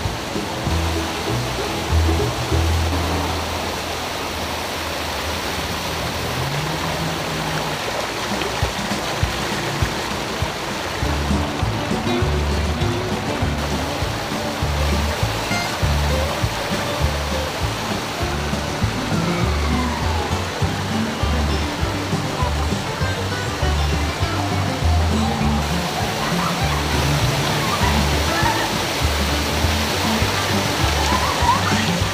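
Music with a bass line of changing low notes over the steady rush of a small waterfall splashing onto rocks into a stream.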